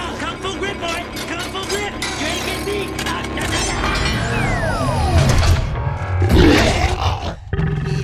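Film sound mix: score music under a robot's shouted line, then a giant robot's deep rumble with rattling debris as it sucks in sand and scrap, loudest about six seconds in. A whistling tone slides down in pitch midway.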